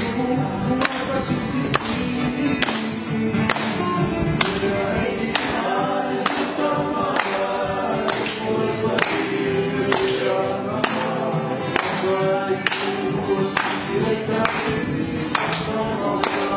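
A group of men singing together to acoustic guitars strummed on a steady beat.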